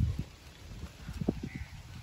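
A low rumble at first, then a quick run of four or five soft knocks a little past the middle.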